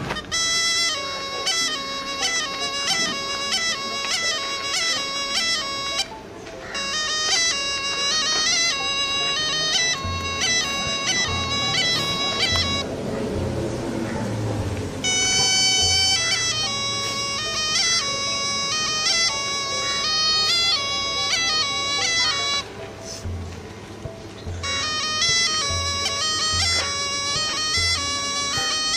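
Snake charmer's pungi, a gourd reed pipe, playing a wavering melody of held, stepped notes, pausing briefly three times.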